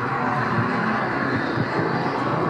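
Soundtrack of a road-project presentation video playing over a hall's loudspeakers: a steady, dense rushing sound with no speech.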